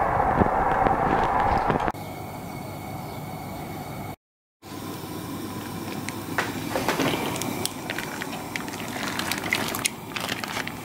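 Propane camp-stove burner lit and running with a steady hiss. It cuts off suddenly about two seconds in, and after a short dropout there are quieter rustles and a few clicks.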